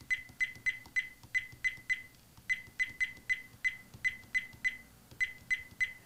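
VIOFO dash cam giving a short high beep for each press of its menu button as the settings menu is scrolled down. The beeps come about three a second, broken by two brief pauses.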